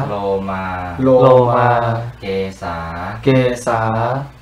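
A man chanting in Pali, drawing out the words 'lomā, lomā, kesā, kesā' (body hair, head hair) as the close of the reverse recitation of the five basic objects of meditation (kesā, lomā, nakhā, dantā, taco) given at a Buddhist ordination.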